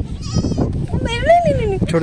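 A young goat kid bleating twice, a short wavering call followed by a longer one that rises and falls in pitch.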